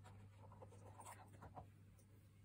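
Near silence with a steady low hum and a few faint, soft scratchy rustles in the middle.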